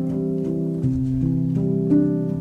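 Solo piano playing a slow, soft neoclassical piece: sustained notes ring into one another, with a new note or chord struck about every half second.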